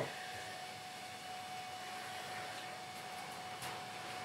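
Steady background hum with a faint, constant whine: the workshop's room tone, with no drilling or tool strikes.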